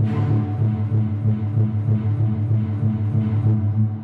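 Hyperion Strings Micro sampled string ensemble playing a dark, low arpeggiated pattern with a quick repeating pulse, heavily reverberated through one of its room impulse responses.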